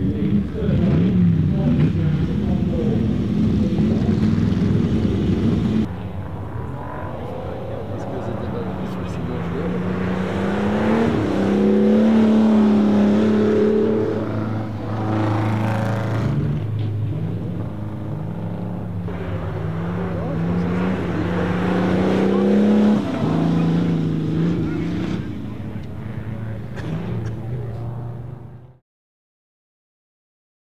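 Ferrari 250 Testa Rossa's V12, fed by six twin-choke Weber carburettors, revving hard and easing off again and again as the car powerslides on ice, its pitch climbing through the revs and dropping at the gear changes. The sound breaks off abruptly about six seconds in and picks up again.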